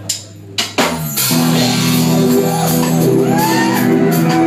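Live rock band with drum kit and electric guitars starting a song: a couple of sharp hits, then the full band comes in loud about a second in and plays on.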